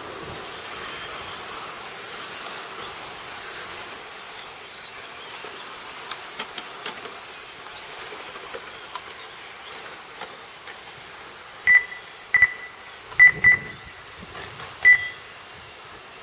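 Electric RC touring cars lapping an asphalt track, their motors and drivetrains whining high and rising and falling as they accelerate and brake. Near the end come five short electronic beeps at irregular spacing, the kind a lap-timing system gives as cars cross the line.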